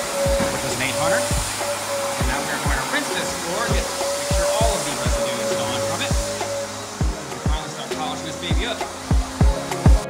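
Wet/dry shop vacuum running steadily with a motor whine as it sucks up slurry and grit from a stripped terrazzo floor, the whine dropping out after about six seconds. Background music with a steady beat plays over it.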